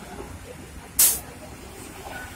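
A bus's air brakes venting one short, sharp hiss of compressed air about a second in.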